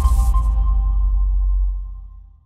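Electronic logo sting: a deep bass rumble with ringing tones and a brief bright hiss at the start. The tones die away and the rumble fades out near the end.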